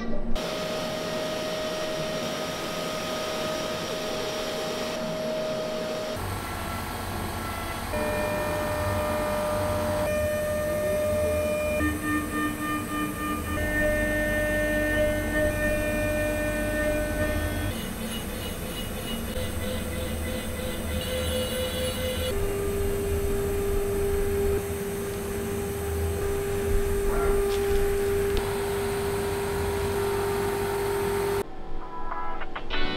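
CNC router spindle milling an aluminium gear housing: a steady cutting whine that holds one pitch for a few seconds, then steps to a new note as the cut changes. A low rumble joins about six seconds in.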